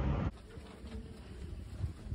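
A brief rush of noise cuts off abruptly, then quiet hallway tone with soft footsteps on carpet.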